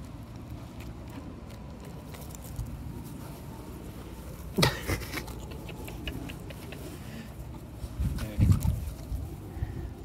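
Rustling and bumping on a phone's microphone as a golden retriever puppy moves right up against it in the grass, with one sharp knock about halfway through and a few low thumps near the end.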